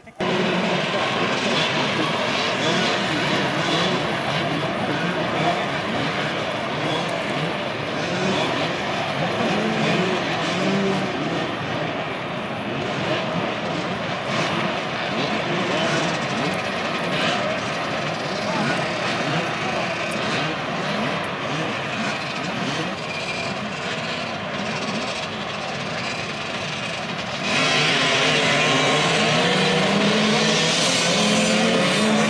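A crowd of off-road dirt-bike engines running together on a start line, with throttles blipped and overlapping. About three seconds before the end they all rev hard at once as the pack launches, and the sound gets louder.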